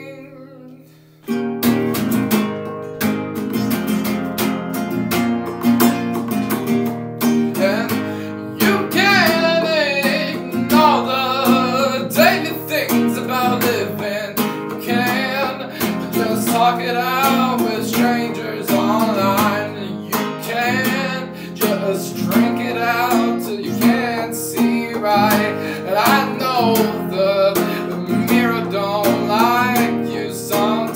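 Lo-fi folk song: after a brief quiet moment, acoustic guitar strumming starts about a second in, and a voice sings over it from about eight seconds in.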